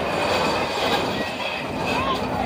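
A child sliding down a plastic spiral slide: a steady rushing, rubbing noise that starts suddenly, with a faint high squeal in it.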